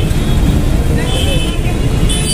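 Busy street traffic noise heard from a motorbike: a steady low rumble of engines and road noise, with a short high vehicle horn toot about a second in.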